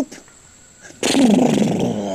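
A deep, rough growling grunt in the voice of a grumpy hippo answering, starting about a second in and lasting just over a second, its pitch falling as it goes.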